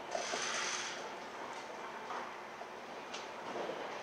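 Faint rustle of hands handling small electrical wires and parts at a workbench, over steady room hiss, with one light click about three seconds in.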